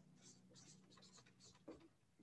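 Faint strokes of a marker pen writing on flip-chart paper: a run of short, light scratches, with a small soft knock near the end.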